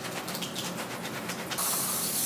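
Cloth rubbing over fuzzy slippers with scratchy rustles, then an aerosol spray can let off in a steady hiss from about one and a half seconds in, spraying the slippers to clean them.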